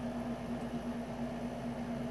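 Air conditioner running: a steady hum with an even hiss.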